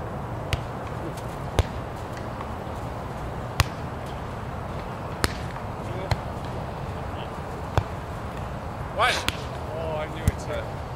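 Volleyball struck by players' hands and forearms during a rally: about six sharp smacks a second or two apart, with a short shout near the end, over a steady low background hum.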